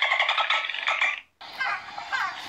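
Dolphin vocalising: a dense, rapidly pulsed buzzing call that cuts off abruptly just over a second in, then, after a brief gap, short downward-sweeping chirps.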